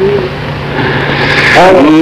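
A male dengbêj's unaccompanied Kurdish singing. A held note ends just after the start, a low steady hum carries through a short breath, and his voice glides back in about a second and a half in.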